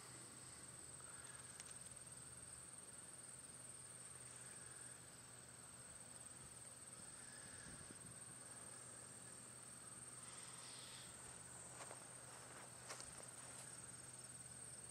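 Faint, steady high-pitched insect chorus over an otherwise near-silent field, with a couple of faint ticks near the end.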